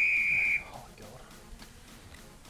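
A single high, steady whistle-like tone lasting just over half a second, starting abruptly and cutting off suddenly: an edited-in sound effect over a cut between shots.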